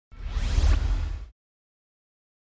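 A whoosh sound effect for a logo intro, lasting about a second, with a deep low rumble under a rising sweep.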